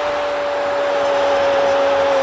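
A football commentator's long drawn-out shout of "goal", held on one steady pitch, over a stadium crowd cheering the goal.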